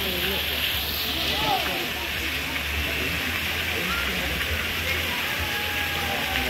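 Water from a tiered stone fountain falling from its basins and splashing into the pool below, a steady rushing hiss, with people's voices talking in the background.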